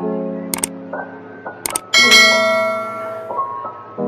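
Soft piano intro music with the sound effects of an animated subscribe button: two quick double mouse clicks, about half a second in and again near two seconds, then a bright notification-bell chime that rings on over the music.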